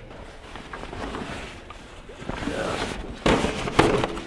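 Hands handling a blower door's fabric panel and fan collar: fabric rustling with several sharp knocks and crackles starting about three seconds in, over a steady rushing hiss.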